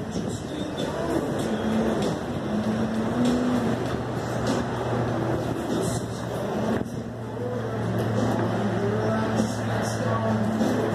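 A steady low engine-like hum over a rumble of road noise, with people talking in the background.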